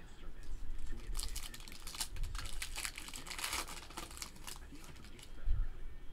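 Trading-card pack wrapper crinkling and crackling as it is handled and opened, a dense run of crackles starting about a second in and dying away after about four seconds, with a soft thump near the end.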